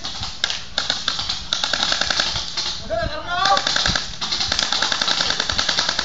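Mock automatic gunfire in a pretend gun battle: rapid rattling bursts of about eight sharp cracks a second, in two long runs, with a shouted voice between them.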